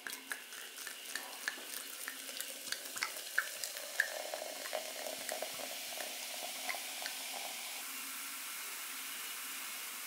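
A fizzy drink is poured in a steady stream into a glass jug over sliced peaches, foaming up with a continuous crackling fizz of bursting bubbles.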